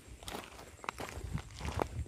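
Footsteps on a gravelly dirt courtyard, walking at an easy pace of about two steps a second.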